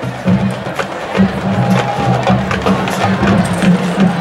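Marching band music: low sustained notes under quick, sharp clicking percussion strikes.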